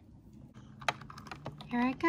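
Light plastic clicks and taps as a small plastic toy figure is handled against a hard plastic playset, with one sharper click about a second in.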